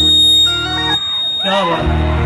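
Live Punjabi band music with sustained bass and held melody notes, and a voice gliding in briefly near the end.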